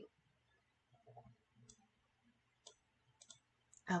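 A few quiet, sharp computer mouse clicks, spaced irregularly, as objects are selected and deleted in design software.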